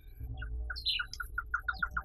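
A forest bird calling: a run of short notes at one pitch that repeat faster and faster, with a few higher chirps mixed in.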